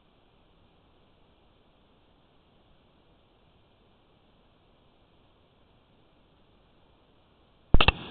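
Near silence with only a faint steady hiss, broken near the end by a few sharp clicks as the sound track comes back up.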